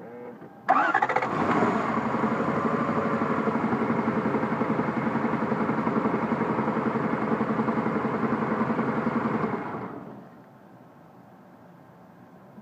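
A 1993 Lexus LS400's 4.0-litre V8 cranked briefly, catching under a second in, idling with an even rhythmic beat for about nine seconds, then switched off and running down. The owner calls this a noise that it is not running right, and tags it as engine knock.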